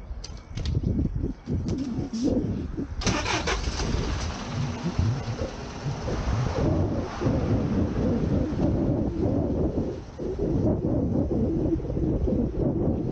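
Street traffic and wind rumbling on the microphone of a bicycle-mounted camera riding along a city sidewalk. About three seconds in, a sudden hiss starts and fades away over the next few seconds.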